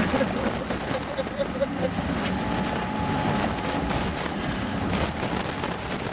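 Steady road and tyre noise inside a car cruising on a highway, with laughter trailing off in the first second or so.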